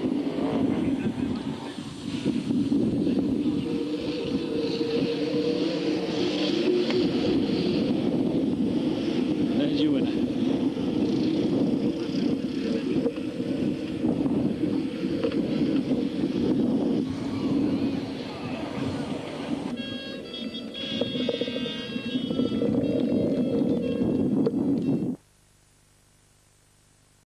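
BriSCA Formula 1 stock cars' V8 engines running around the track with voices mixed in. The sound cuts off abruptly near the end.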